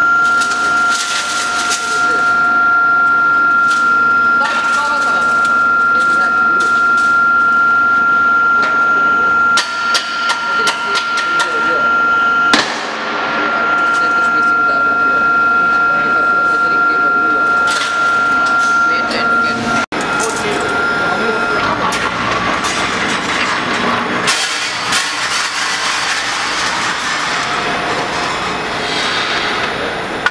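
Factory noise around a wire mesh welding machine: a steady high-pitched whine, people talking, and sharp metallic clatter from steel wires being handled on the feeding rack. About two-thirds of the way in it turns to louder, rougher machine noise.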